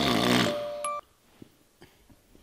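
A man's loud, exaggerated snore, ending about half a second in. A short bright tone follows just before one second and cuts off suddenly, leaving quiet room tone.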